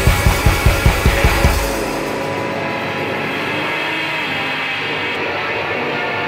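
Alternative rock recording: a fast, driving drum beat under dense guitar and bass cuts out about a second and a half in, leaving sustained chords ringing on without drums.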